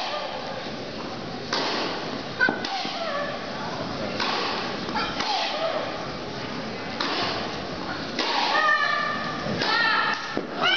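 Voices of people talking courtside in an echoing indoor tennis hall, broken by several sharp knocks; the loudest knock comes about two and a half seconds in, and a nearby voice is clearest near the end.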